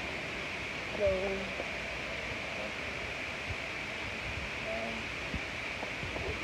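Steady background hiss with a brief spoken remark about a second in and faint distant voices later on; no other distinct sound stands out.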